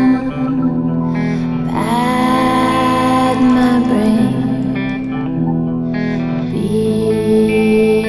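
Rock song with guitar: held notes and chords that change every second or two, with sliding pitches about two seconds in and again near the end.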